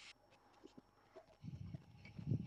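Near silence: room tone with a few faint clicks, and low thumps starting about one and a half seconds in.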